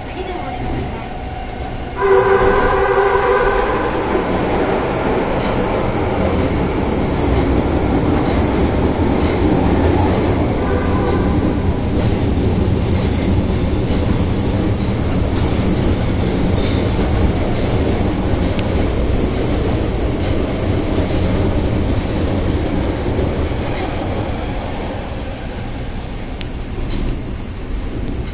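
Kita-Osaka Kyuko 9000 series subway train running, heard from inside the car: a steady rumble with rail noise. About two seconds in the sound grows suddenly louder with a chord of steady tones lasting about two seconds, and similar tones come back briefly near eleven seconds.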